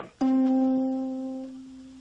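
A single note from a plucked, tightly stretched string. It is plucked once about a quarter second in and rings on, slowly fading, with the upper overtones dying away first. The string is halved, so the note sounds the same tone one octave higher than the whole string: the 2:1 ratio of the octave.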